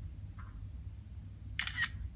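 iPhone camera shutter sound as a photo is snapped: a short, sharp double click near the end.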